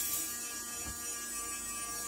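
A steady electrical buzz and hum, with a soft thump about a second in.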